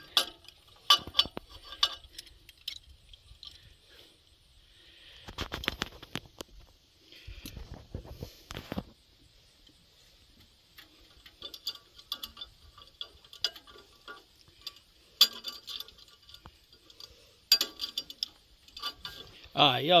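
Pliers working steel wire around the corners of a steel plate on a tractor seat's spring base: irregular metallic clicks, clinks and scrapes as the wire is twisted tight, with a stretch of rougher rustling noise about five to nine seconds in.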